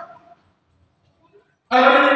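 A man's voice trails off, then about a second and a half of dead silence, then singing with music cuts in abruptly near the end.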